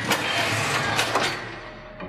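Sound effect of heavy oven doors being opened: a loud rushing noise that starts suddenly and fades away over about two seconds.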